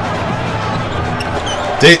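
Game audio from a basketball highlight clip: a basketball dribbling on the court over steady arena noise and backing music. A man's voice cuts in briefly near the end.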